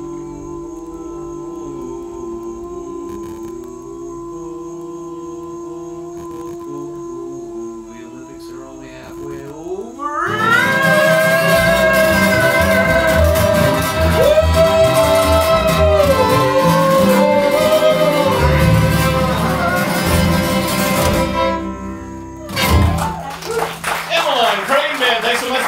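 Acoustic guitar, upright bass and fiddle with two voices ending a song. A quiet held passage runs for about ten seconds, then voices and instruments come in loudly on a rising slide into a long held final note. The music cuts off a couple of seconds before the end, followed by a short burst of clapping and voices.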